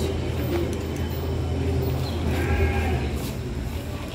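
A single short bleat about two and a half seconds in, over a steady low hum.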